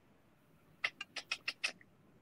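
A quick run of about six short, sharp clicks, faint, lasting under a second near the middle.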